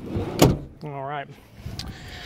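A car's side door shutting on a 2015 Honda Pilot: one sharp thump about half a second in.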